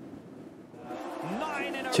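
A short quiet pause, then faint, indistinct voices fading in from about a second in.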